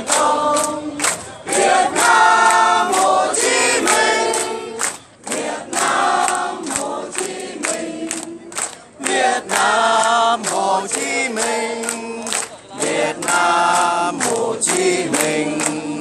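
A crowd singing a Vietnamese patriotic song together and clapping along to a steady beat.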